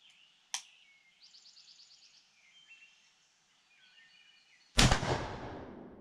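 One shot from a Browning semi-automatic 10 gauge shotgun firing a 3½-inch magnum slug, very loud and sudden near the end, its report ringing out for about a second under the range's roof. Faint bird chirps come before it.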